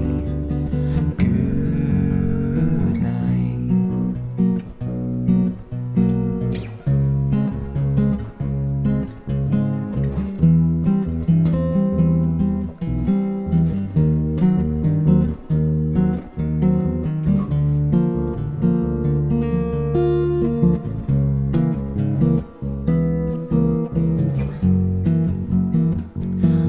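Instrumental break of an acoustic ballad: a steel-string acoustic guitar picks out notes and chords over a plucked upright bass, with no vocals.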